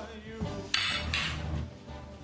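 Dishes and cutlery clattering on a dinner table: two sharp crashes about three-quarters of a second in and again just after a second, over soft background music with singing.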